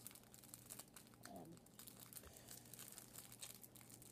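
Faint crinkling of packaging being handled, a scatter of small irregular crackles.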